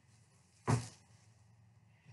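A single dull thump about two-thirds of a second in, as a large piece of cross-stitch fabric is handled and put down, over quiet room tone.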